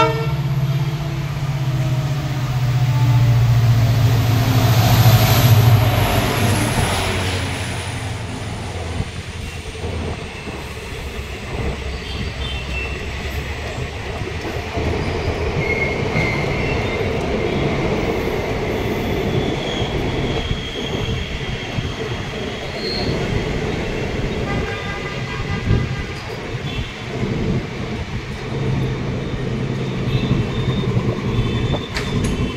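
Indian Railways WDP4D diesel locomotive, an EMD 16-cylinder two-stroke, passing with a loud, steady engine hum and a high whine that falls in pitch as it goes by, its dynamic brakes humming. It is followed by passenger coaches rolling past with steady wheel rumble and clatter over the rail joints.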